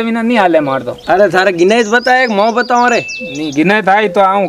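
A man's voice going on without a break in a drawn-out, sing-song Marwari delivery, its pitch wavering up and down. A brief thin high whistle-like tone sounds near the end.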